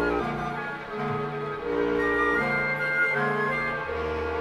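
Symphony orchestra playing slow, sustained chords on bowed strings and winds, with a high note held for under a second just past the middle.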